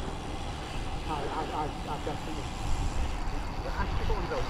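Steady wind rumble on the microphone while riding, with faint voices talking in the background.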